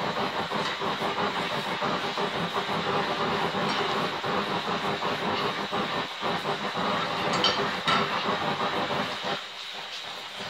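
Oxy-acetylene torch flame burning with a steady rushing hiss as it heats a polished steel hammer to hot-blue it, with a few light metallic clicks from a wrench on the bolt in the hammer's head; the flame noise eases slightly near the end.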